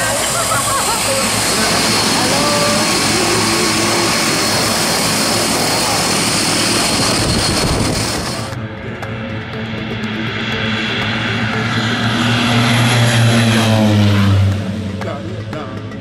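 Twin-engine propeller jump plane running close by: a loud, steady engine and propeller roar with a high whine over it. About eight seconds in the sound cuts to the plane taking off on a dirt runway, its engine drone swelling, dropping in pitch as it passes and fading near the end.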